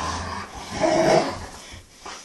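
Dogs play-growling while tussling over a toy: a low growl at the start, then a short high whine about a second in.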